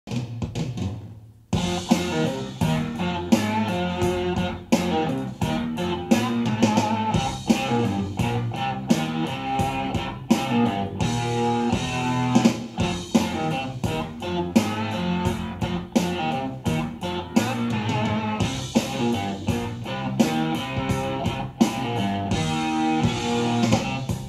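Rock music with guitar and drum kit played back over Wolf von Langa Swing loudspeakers in a listening room, coming in fully about a second and a half in after a quiet opening.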